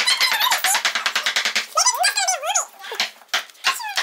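Young children's high-pitched voices: wordless vocal sounds and unintelligible chatter, with a rising and falling exclamation about two seconds in.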